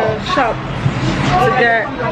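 A woman talking, over a steady low hum.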